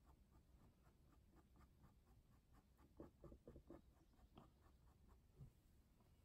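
Faint, short scratchy strokes of a thin paintbrush sweeping fur onto a canvas, with a run of quick strokes about three seconds in, over near-silent room tone.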